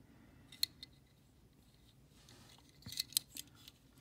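Faint clicks and taps from a 1:64 die-cast metal model car being handled and turned over in the fingers: one sharp click about half a second in and a short run of clicks near the three-second mark.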